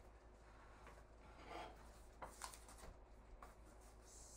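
Near silence: room tone with a faint rustle about a second and a half in and a few small clicks later.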